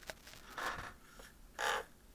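JR 8711 digital RC servo driving its arm and returning it to center under transmitter control, giving short buzzing whirs. There is a faint one in the first second and a louder, brief one near the end. The servo runs smoothly with no jitter.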